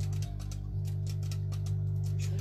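A rock band playing softly: a sustained low note held under light, evenly repeated electric guitar strokes.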